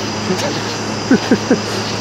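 A man laughing in a few short, falling bursts, over the steady low hum of a pickup truck left running, its automatic transmission just broken.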